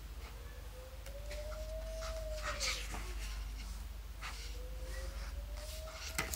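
Two long, thin whining calls from an animal, each about two and a half seconds, rising slightly and dipping at the end. A short rustle of paper pages being turned comes in the middle.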